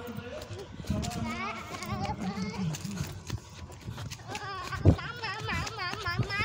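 People's voices: a lower voice in the first half, then high, wavering calls in the second half, typical of a small child vocalising. A single sharp thump about five seconds in is the loudest sound.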